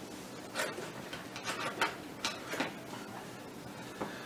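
A scattering of light clicks and taps of small hand tools being picked up and handled on a workbench, mostly in the first half and little after.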